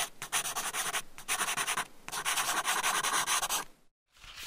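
Crumpled paper rustling and crinkling as a sheet is unfolded, in three stretches with brief breaks, stopping just before the end.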